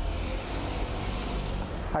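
Road traffic: a vehicle driving by, a steady rush of tyre and engine noise over a low rumble. It starts and stops abruptly.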